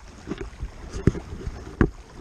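Water rushing and slapping against a kayak hull moving at speed, with wind rumbling on the microphone. Three sharp knocks come roughly every three-quarters of a second.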